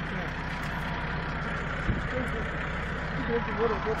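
Farm diesel engine idling steadily, with a single knock about two seconds in and faint voices near the end.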